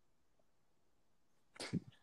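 Near silence, then a short breathy burst from a person's voice, a quick exhale or snort, about a second and a half in.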